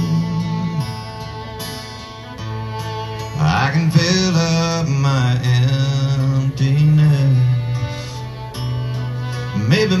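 Live country song: a steel-string acoustic guitar strummed with a fiddle playing alongside, and a man singing long held notes.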